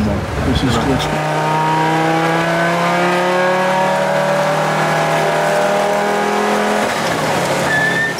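Audi Sport Quattro S1's turbocharged five-cylinder engine, heard from inside the cabin, pulling at steady revs with its pitch slowly rising, then easing off about seven seconds in.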